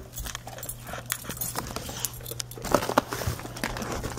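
Dogs chewing and crunching treats, with scattered short clicks and crunches and a light metallic jingling.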